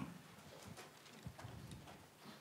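Near silence in a large room: faint room tone with a few soft clicks.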